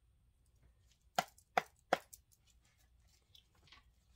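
Tarot deck being shuffled by hand: three sharp card taps about a second in, each under half a second apart, then faint rustling of the cards.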